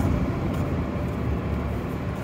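Steady downtown street traffic noise: an even low hum of vehicles, city buses among them.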